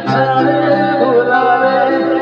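A man singing a long held note with a slight waver into a microphone, over acoustic guitar accompaniment.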